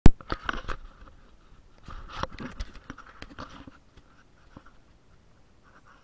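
Camera handling noise: a sharp click at the very start, then irregular knocks and rustles as the camera is moved about in the hand, dying away after about four seconds.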